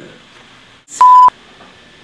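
A short, loud, single-pitch electronic bleep about a second in, lasting about a third of a second and cutting in and out abruptly: a censor bleep tone dubbed over a word.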